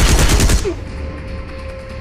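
Assault rifle firing one short, fully automatic burst of rapid shots lasting about half a second, very loud. Background film music with a steady held tone carries on after the burst.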